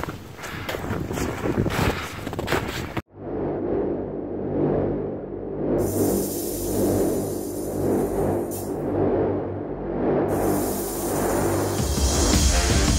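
A laugh over wind buffeting and rustling on a handheld microphone. About three seconds in this cuts off abruptly and background music takes over: sustained low notes under a slow swelling pulse about once a second.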